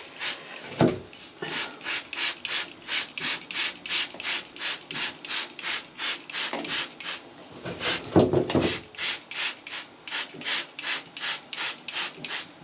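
Short rubbing or hissing strokes, about three a second, from a mealybug-infested houseplant being cleaned by hand in a bathtub. Two louder knocks come about a second in and about eight seconds in.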